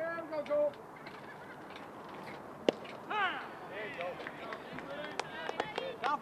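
Geese honking in a run of short calls, with one sharp pop of a pitched baseball into the catcher's mitt about two and a half seconds in.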